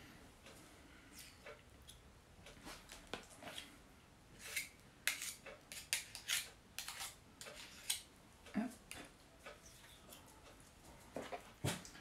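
Faint, irregular clicks and scrapes of metal spoons against each other and a plastic bowl as ricotta is shaped into quenelles.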